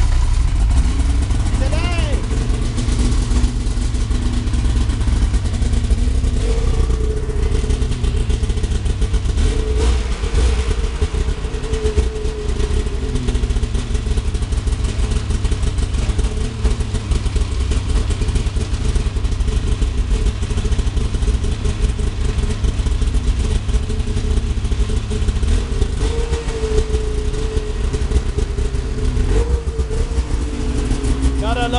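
Rotax 800 two-stroke snowmobile engine idling just after a cold start, its revs wavering up and down.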